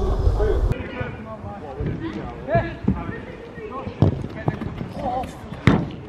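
Scattered shouts of players on an outdoor five-a-side pitch, with several thuds of a football being kicked. The loudest is a hard shot near the end. A low wind rumble on the microphone cuts off suddenly in the first second.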